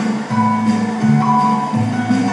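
Live band playing an instrumental passage of a Chinese New Year song, with guitar to the fore over bass notes that change about twice a second.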